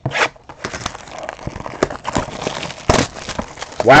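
Hands handling and opening a small cardboard trading-card box: rustling and crinkling with scattered sharp clicks and taps.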